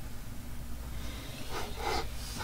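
A short, breathy rush of noise near the end over a steady low hum of a small room, with faint scratching of a graphite pencil drawn along a metal ruler on paper.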